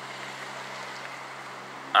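Steady street traffic noise: an even hiss with a low, steady hum beneath it.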